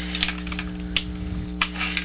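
Handling noise from fingers working on a tube fly: a few light clicks and taps over a steady electrical hum.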